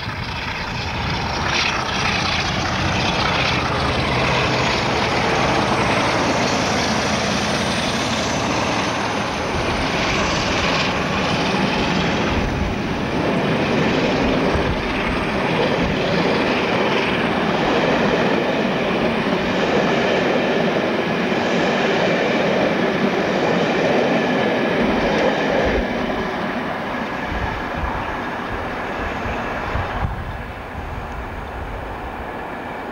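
Diesel trains passing close by: engine running under power together with the noise of the wheels on the rails. The sound is steady and loud and eases a little near the end.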